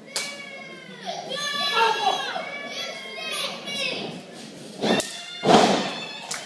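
Thuds of wrestlers' bodies hitting the ring mat: one just after the start and two heavy ones near the end, the second the loudest. In between, high-pitched children's voices shout from the crowd.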